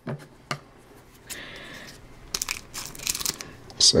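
Hockey card pack wrapper being handled and torn open. A few light clicks come first, then a crinkle about a third of the way in, then a dense run of crackling in the second half.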